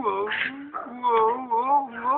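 A girl making drawn-out, wordless voice sounds into an orange plastic sports cone held over her face, the pitch wavering and sliding up and down in a string of short calls. There is a brief breathy hiss about half a second in.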